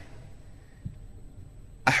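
Low background noise with a faint thin high steady tone, and a small dull bump a little under a second in. A man's voice starts speaking again near the end.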